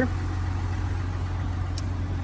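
Steady low hum of a 3.0L Duramax inline-six turbodiesel idling.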